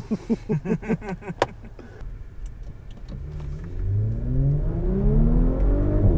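Men laughing briefly, then the Audi S5's turbocharged V6 accelerating hard, heard from inside the cabin, its pitch climbing steadily and getting louder over the last three seconds.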